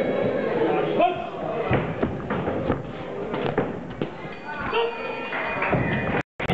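A string of irregular thuds, typical of boxing gloves landing punches, over people's voices in a large hall.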